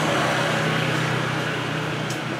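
Steady background rushing noise with a low hum, easing off slightly.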